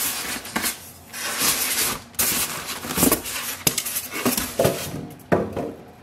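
Polystyrene foam packing insert being worked loose and lifted out of a cardboard printer box: a run of irregular scraping and rubbing of foam against cardboard, with knocks and a few short squeaks.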